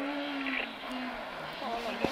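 Engine of a Peugeot 206 rally car approaching out of sight, heard from a distance, its note dropping in pitch, with faint voices of spectators nearby.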